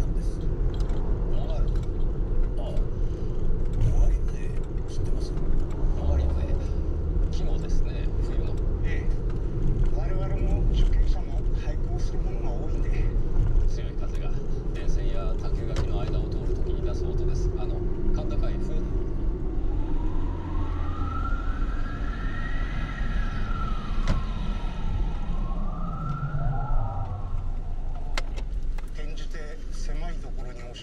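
Steady low road and engine rumble heard from inside a moving vehicle. About two-thirds of the way in, a siren wails, slowly rising and falling twice.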